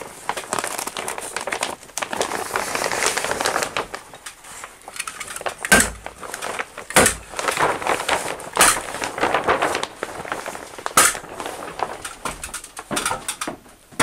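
Clear 6 mil polyethylene vapour-barrier sheeting crinkling and rustling as it is pulled and folded up against ceiling joists. Four sharp hammer-stapler strikes, a second or more apart, fasten the poly to the framing; they are the loudest sounds, in the middle stretch.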